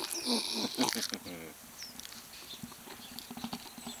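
A dog sniffing and snuffling right at the microphone in the first second and a half, with a short falling vocal sound, then soft rustling.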